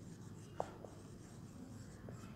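Marker pen writing on a whiteboard, faint, with a short squeak about half a second in.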